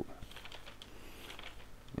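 A few faint, irregular light clicks or taps in a pause between speech.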